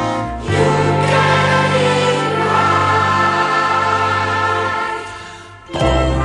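Music with a choir singing held chords over a steady low bass. It fades down near the end, then comes back in suddenly.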